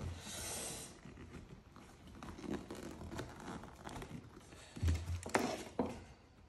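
Rustling and scraping of a motorcycle seat cover being stretched by hand over its plastic seat base. Near the end come a few knocks as the pneumatic staple gun is brought up against the seat.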